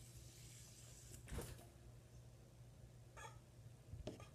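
Near silence: faint room tone with a steady low hum, broken by one brief faint rustle about a second and a half in and a fainter one near the end.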